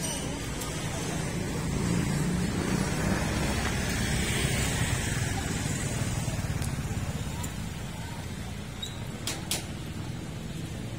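Street traffic: a road vehicle's engine and tyre rumble swells for a few seconds and then eases. Two sharp clicks come near the end.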